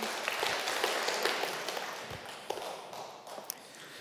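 Congregation applauding, peaking about a second in and gradually dying away.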